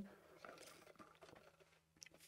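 Near silence: a faint sip through a straw from an insulated tumbler about half a second in, over a low steady hum.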